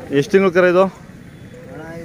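A loud, short voiced call, under a second long and broken once near its start, followed by faint background voices.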